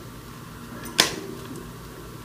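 A boxed deck of playing cards set down on a glass tabletop: one sharp tap about a second in.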